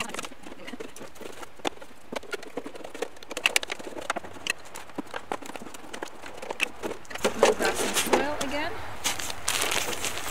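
Empty plastic milk jugs being handled and set down on a tabletop: a run of light knocks, clicks and plastic crinkles. A woman's voice starts a little after seven seconds in.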